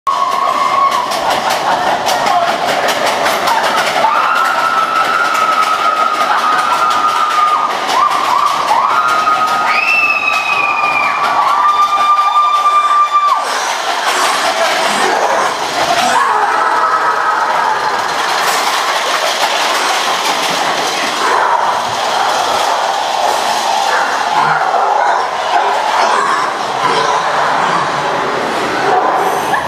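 Matterhorn Bobsleds ride car rolling along its steel track, with a steady loud rattle. Between about four and thirteen seconds in, a series of high, held squeals comes in, each lasting a second or two.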